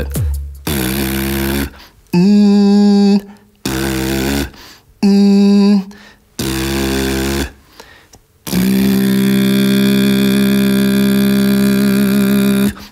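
Beatbox lip oscillation: a buzzing lip bass held on a steady pitch while a note is sung a fifth above it, forming a 'power chord'. It comes as several short held tones about a second each, then one long held chord starting about eight and a half seconds in.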